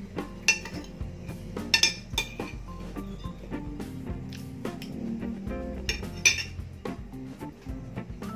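Several sharp clinks of cutlery against a plate during eating, over steady background music.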